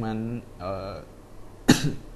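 A man's single short, sharp cough near the end, following a couple of spoken syllables.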